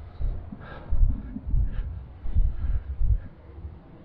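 Walking footsteps picked up through a handheld camera as low, dull thuds about every two-thirds of a second.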